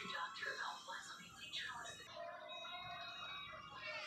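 Faint television or video audio: a voice in the first half, then steady music tones.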